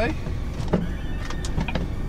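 Scania truck's diesel engine idling steadily, heard from inside the cab, with a couple of light clicks near the middle and near the end.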